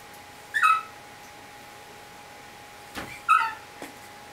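Great Dane puppy giving two short, high-pitched yips while playing, one about half a second in and another near the end, each dropping slightly in pitch.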